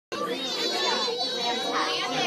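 Hubbub of many young children talking and calling out at once, with a high-pitched child's voice standing out in the first second.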